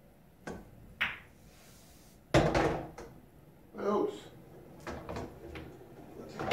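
Pool shot: the cue tip strikes the cue ball about half a second in, and a sharp ball-on-ball click follows about half a second later. About two seconds in comes the loudest sound, a heavy thud, and lighter ball knocks follow after it.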